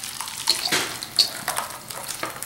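Thick coconut custard batter pouring from a mixing bowl into a glass pie dish: wet slopping and splatting, with a few short clicks and two brief high clinks of the whisk against the bowl.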